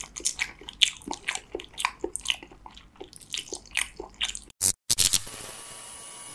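Close-miked mouth sounds of a person chewing raw salmon: irregular wet, squishy clicks and smacks. About four and a half seconds in they cut off suddenly, and after two short bursts a steady hiss with a faint hum takes over.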